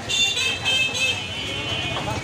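Vehicle horns tooting in street traffic: two short, shrill horn blasts in the first second over a rough traffic background.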